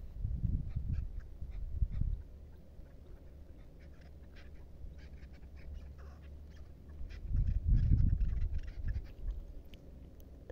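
Chukar partridges calling in short, rapid clucking notes, faint and repeated. Gusts of wind buffet the microphone with low rumbles in the first two seconds and again about seven to nine seconds in.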